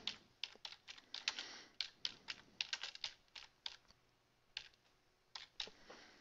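Quiet typing on a computer keyboard: a quick run of keystrokes for about three and a half seconds, a pause, then a few more keystrokes near the end.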